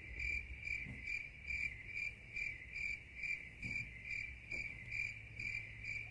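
Crickets-chirping sound effect: an even, high chirp repeating about twice a second over a faint low hum. It is the stock comic 'crickets' cue for an awkward silence.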